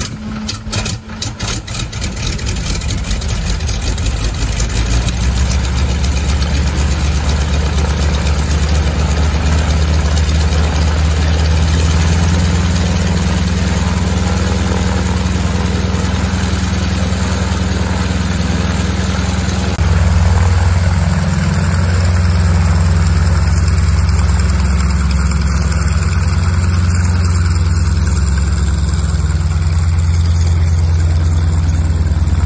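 North American Harvard's nine-cylinder Pratt & Whitney Wasp radial engine starting: uneven firing for the first couple of seconds, then catching and building to a steady run by about five seconds in. About twenty seconds in it picks up revs and runs on steadily as the aircraft moves off to taxi.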